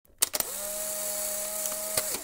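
Intro sound effect: a few quick clicks, then a steady electronic drone with a bright hissing wash.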